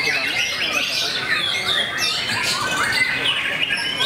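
Many caged songbirds singing at once, a dense unbroken chorus of overlapping whistled phrases, rising and falling chirps and trills; a white-rumped shama is among the singers.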